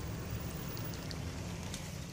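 Steady low rumble of a car waiting in a queue, with light rain falling outside and a few faint ticks of drops.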